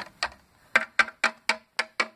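Plastic Littlest Pet Shop figurine tapped along a hard plastic toy couch to make it walk: a run of quick sharp clicks, about four a second, after a short gap near the start.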